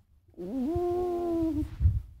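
A woman's voice holding one steady, wordless note for about a second after a short rise in pitch, like a drawn-out 'mmm'. A couple of low thumps follow near the end.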